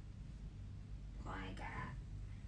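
A young woman's brief whisper, a short breathy murmur about a second and a half in, over a low steady hum.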